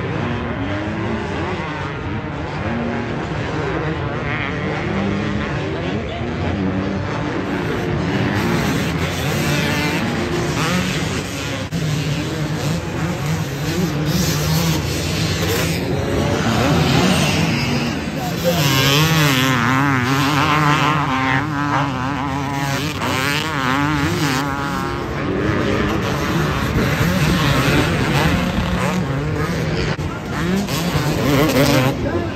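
Motocross bikes racing past on a dirt track, their engines revving up and down through the gears. It grows louder about two-thirds of the way in, with fast rising and falling revs as a bike comes close.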